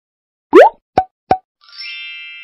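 Cartoon transition sound effects: a quick rising bloop about half a second in, two short plops, then a bright chime that rings on and slowly fades near the end.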